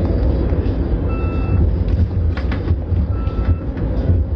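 Low rumble of a car's engine and road noise heard inside the cabin, with an electronic warning chime beeping twice, about a second in and again about three seconds in. A few light clicks around the middle.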